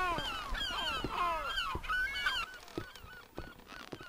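Several seagulls calling over one another in short cries that fall in pitch. The calls thin out after about two and a half seconds, leaving a few soft footsteps.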